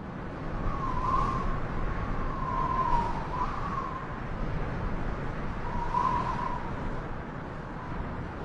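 Steady rushing noise of the river's moving water and wind, with a faint wavering whistle-like tone that comes in about a second in and again around six seconds.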